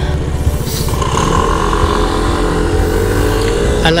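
SYM New Fighter 150 scooter's single-cylinder engine running with an even low putter, then picking up revs from about a second in with a slowly rising whine as the scooter pulls away.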